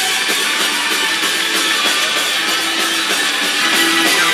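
Live rock band playing an instrumental passage: electric guitars, bass guitar and drum kit, with no vocals.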